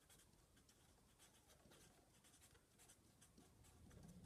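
Very faint scratching strokes of a felt-tip marker writing on paper.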